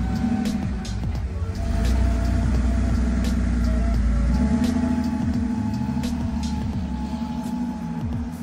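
Air-cooled flat-six engine of a 1980s Porsche 911 Carrera Targa running as the car pulls away and drives off, a low rumble that eases about halfway through, under background music.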